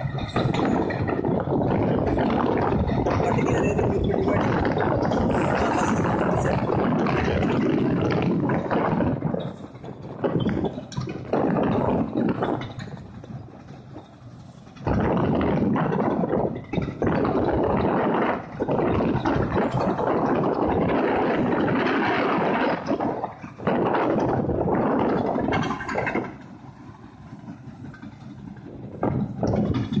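Tesmec TRS1675 trencher cutting through rock, its digging chain grinding in a loud, dense noise over the diesel engine working under load. The grinding drops away for a few seconds several times, most clearly about halfway through and near the end.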